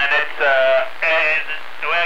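Unintelligible voices coming through a radio receiver, thin and wavering in a few short bursts: distant stations received over long-distance skip.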